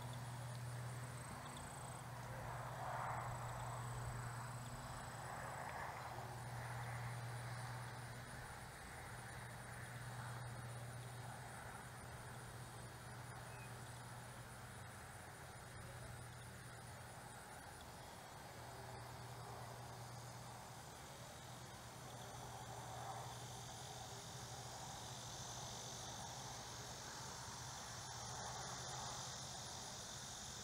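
Faint outdoor ambience of insects chirring steadily in a high pitch, growing louder over the last few seconds, over a low steady hum. A soft rush swells and fades a few times, most in the first half.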